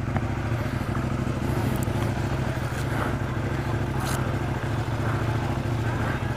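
Motorcycle engine idling steadily at an even, low pitch.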